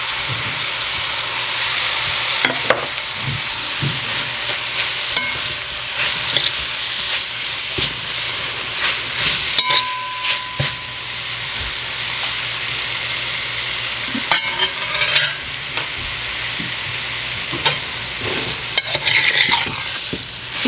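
Grated green mango sizzling in hot vegetable oil in a large metal pot, stirred and turned with a metal spoon, which scrapes and clicks against the pot now and then over a steady frying hiss.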